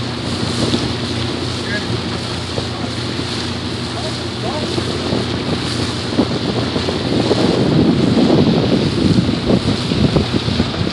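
Wind buffeting the microphone on a moving boat, over the steady hum of the boat's engine and water washing past the hull; the wind gusts grow louder in the second half.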